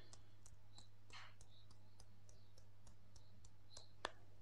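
Faint, light clicks, about four a second, from fingers tapping on EFT tapping points, over a steady low hum.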